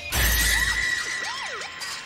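The hip hop beat cuts off and a shattering crash sound effect hits, with a short low boom under it. A steady high tone is held for about a second and a half, and swooping up-and-down tones begin to come in.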